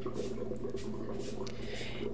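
Tap water running onto and into a plastic bottle in a sink while a hand scrubs the inside, a steady splashing with soft rubbing.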